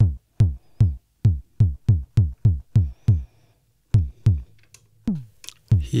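Synthesized kick drum from a Behringer Pro-1 analog synthesizer, hit over and over. Each hit is a fast downward pitch sweep into a low thump with a little noise mixed in. They come about two to three a second, with a pause of about a second midway, while the sound is being tweaked.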